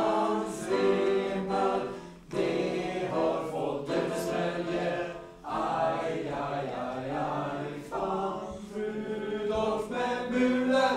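A group of young voices singing together in Swedish, unaccompanied, in phrases broken by short breaths about two, five and eight seconds in.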